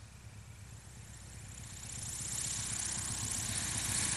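Bearhawk light taildragger's piston engine and propeller on its landing rollout on grass, a low steady engine note with a rising hiss, growing louder from about a second in as the plane rolls up close.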